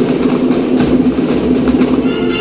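Marching band drums playing a fast, even roll-like pattern over a steady low note, with the brass melody dropped out.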